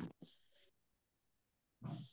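Mostly near silence, with a short breathy hiss just after the start and another near the end as a voice starts again: a speaker's breath.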